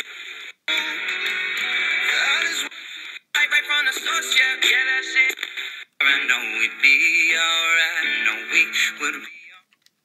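Eton Elite Mini compact AM/FM/shortwave radio scanning the FM band through its small speaker: snatches of station audio, music with singing, thin and without bass. Each snatch is cut off by a brief silence as the tuner mutes and jumps to the next station, three times, and the sound fades out near the end.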